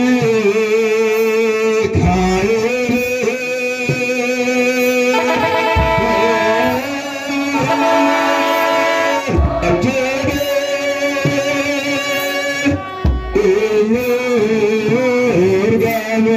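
An Ethiopian Orthodox church choir chants a hymn in Afaan Oromo in unison, holding long, wavering notes. A kebero drum gives a deep beat every few seconds under the singing.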